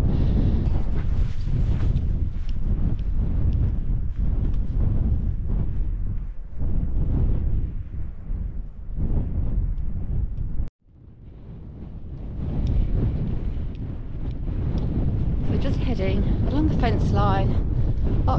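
Wind buffeting the microphone, a loud, steady low rumble that drops out abruptly about eleven seconds in and then builds back up.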